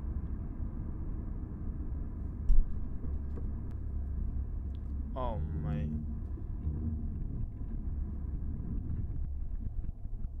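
Steady low rumble of engine and road noise inside a moving Ford Mustang's cabin at highway speed. A single heavy thump comes about two and a half seconds in, and a short tone slides downward about five seconds in.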